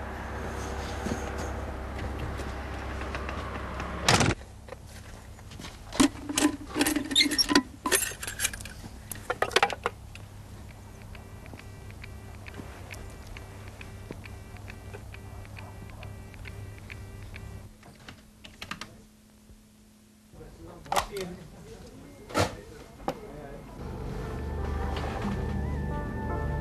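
Steady low hum of a stopped electric locomotive's cab, then sharp clicks and knocks as a trackside railway block telephone is handled, and a faint, evenly repeating calling tone on the line for several seconds.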